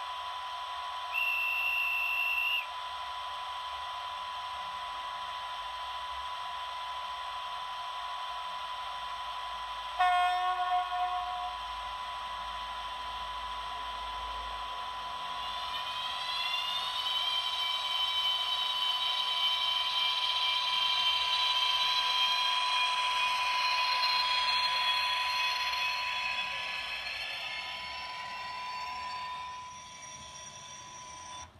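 Sound decoder of a model DB class 143 electric locomotive playing its departure sequence: a short high door-closing beep, a horn blast about ten seconds in, then the whine of the electric traction motors rising in pitch as the train pulls away, levelling off and fading near the end. A steady high tone runs underneath throughout.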